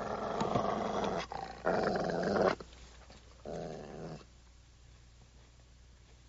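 A Rottweiler growling three times, each growl about a second long, the third quieter.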